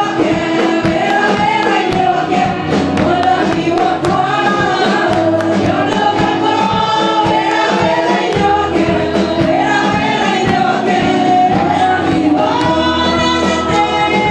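Live gospel worship music: many voices singing together over a band, with a steady bass line and a regular drum beat.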